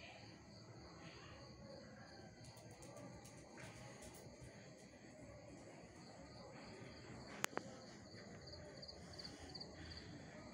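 Faint high insect chirping that pulses a few times a second toward the end, over a low background hiss. A sharp double click about seven and a half seconds in.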